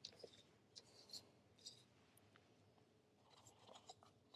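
A few faint, short scratches of a metal dip-pen nib on card stock, then a brief soft rustle near the end as the card is shifted and turned on a plastic sheet.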